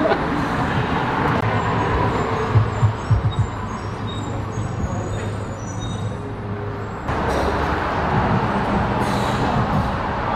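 Street traffic: a motor vehicle's engine running close by, a steady low hum over road noise, with the sound shifting abruptly about seven seconds in.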